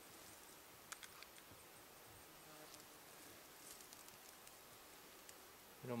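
Near silence with a faint insect buzz, and a few light clicks about a second in.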